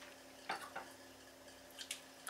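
A few faint clicks of a fork against a plate as pasta is picked up: a small cluster of taps about half a second in and two more near the end.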